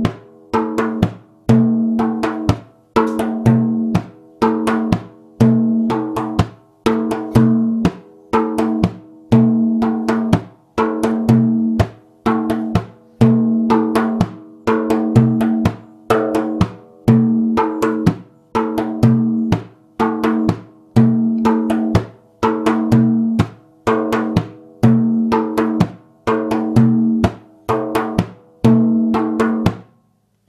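Large hand-held frame drum played in the maqsum rhythm, in the fuller variation with extra taka strokes (doom pa taka pa doom taka pa taka). Deep ringing doom strokes alternate with sharper pa and tak strokes in a steady cycle of about two seconds.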